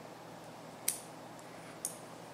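Two snips of small fly-tying scissors cutting away excess kip tail hair at the head of the fly, about a second apart, the first louder.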